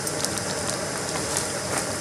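Gas canister backpacking stove burning steadily, its burner heating two cups of water toward a boil, with a few faint crinkles of plastic zip-lock bags being handled.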